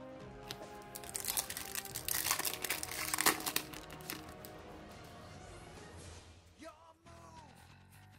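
Foil wrapper of a Yu-Gi-Oh! booster pack crinkling as it is opened and the cards are pulled out. The crinkling is densest from about a second to four seconds in, over background music.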